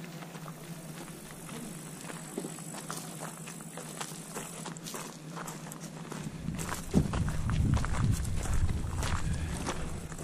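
Footsteps crunching on a gravel path in a run of short, irregular steps, with a faint, high, steady tone through the first half. From about seven seconds a louder low rumble on the microphone joins.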